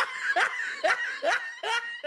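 Laughter: a run of short 'ha' pulses, about two a second, each rising in pitch.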